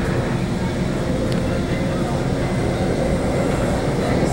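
Metrolink commuter train in motion, heard from inside a passenger car: a steady rumble of the wheels on the rails.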